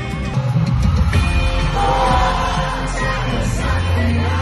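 Live pop concert recorded on a phone in the crowd: the band and a male singer performing through the arena PA, with the audience singing along and shouting.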